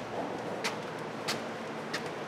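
Footsteps climbing open wooden stair treads, one step about every two-thirds of a second, over a steady background hiss.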